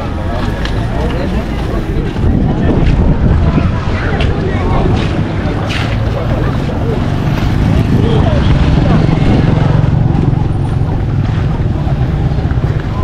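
Wind rumbling on the camera microphone over steady street noise, with indistinct voices in the background.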